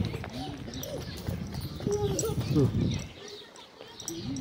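A person's voice, talking or humming in short phrases that the speech recogniser could not make out, quieter briefly near the end.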